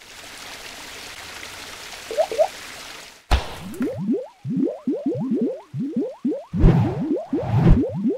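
Animated logo sting sound effects: a hissing whoosh swell, then a sharp hit about three seconds in, followed by a rapid string of short rising bloops, with heavier low thuds near the end.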